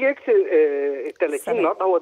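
Speech only: a man talking over a telephone line, drawing out one long hesitation sound before going on.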